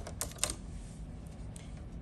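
Embroidery hoop being fitted back onto the embroidery machine's arm: a quick run of sharp plastic clicks in the first half second, then quiet handling.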